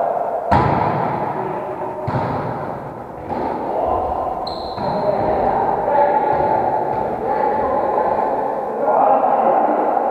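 A volleyball struck hard on a serve about half a second in, then several more hits of the ball during the rally, echoing in a large gym hall over players' voices.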